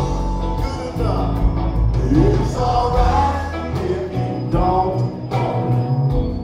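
Live rock band playing: electric guitars, drums and keyboards with sung vocals, steady beat with regular cymbal and drum hits.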